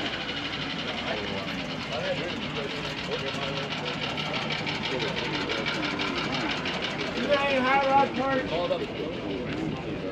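People talking in the background over an engine running steadily, with a low hum and a fast, even ticking. One voice is louder about seven seconds in.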